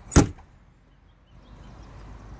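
The side storage compartment door of a Freightliner Cascadia tractor pushed shut by hand, closing with a single sharp bang just after the start.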